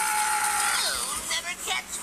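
High-pitched, sped-up cartoon voice drawing out a long steady note, then dropping in pitch into 'catch me', a taunting 'you'll never catch me'.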